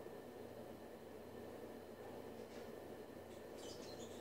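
Faint sizzle of oil heating with mustard seeds in a steel pan, with a few faint crackles near the end.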